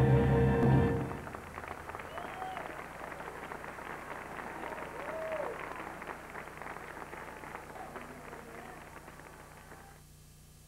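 Stage music with held notes cuts off about a second in, followed by a live audience clapping and cheering, gradually fading.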